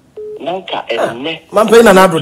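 Speech: a voice talking over a phone line, sounding narrow and thin, followed by fuller-sounding talk about one and a half seconds in.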